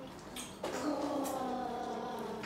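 A child's voice holding one long, steady note, starting just over half a second in and held for more than a second.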